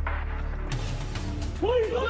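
Background music with a steady low drone under a rush of scuffling noise and knocks as agents burst through a door. Men start shouting near the end.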